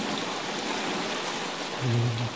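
Steady rainfall: an even hiss of rain with no thunder. A man's voice briefly comes in near the end.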